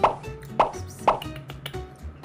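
Three short cartoon pop sound effects about half a second apart, over light background music.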